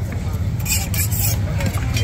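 Steady low engine rumble with faint voices in the background, and a brief rough hissing or scraping noise about a second in.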